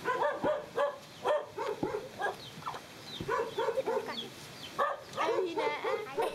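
Young children's high voices calling out and laughing in short excited bursts. Under them, a wooden pestle pounding rice in a concrete mortar gives a few dull thuds, roughly one every second and a half.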